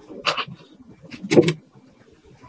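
Metal baking tray of filled paper cupcake molds being handled: a short rustle, then a few quick knocks and clicks against the counter.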